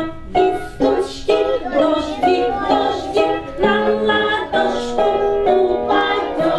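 A group of young children singing an autumn song together over an instrumental accompaniment, with a steady rhythm of held notes.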